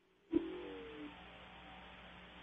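Faint hiss and hum of an open telephone line on a call-in radio show, with a brief faint sound about a third of a second in that fades within a second.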